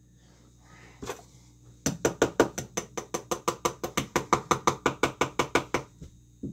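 A rapid, even run of sharp knocks, about seven a second, starting about two seconds in and going on to near the end, after a single knock about a second in. A packed bath bomb mold is being tapped to free the bath bomb from it.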